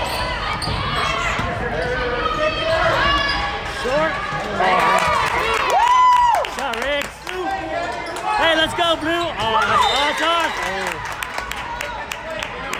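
Basketball dribbling and bouncing on a hardwood gym floor during play, amid players and spectators shouting and calling out, with one long held shout about six seconds in.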